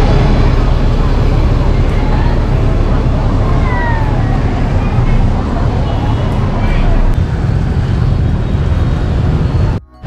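Outdoor street noise: a steady low rumble of traffic mixed with the voices of passers-by.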